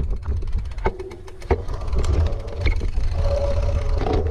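Mountain bike clattering over a rocky singletrack descent, with frequent sharp knocks and rattles from the bike and wheels. Wind rumbles on the camera microphone underneath.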